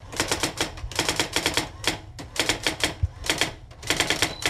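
Typewriter keys clacking in quick runs of strokes with short pauses between, laid over letters appearing one at a time, with one heavier low thump about three seconds in.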